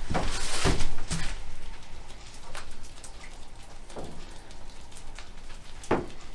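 A few light knocks and rustles in the first second, then faint background noise with occasional soft taps.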